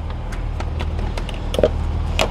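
A few light plastic clicks and knocks as the stock airbox lid of a Toyota GR86 is unclipped and lifted open, over a steady low hum.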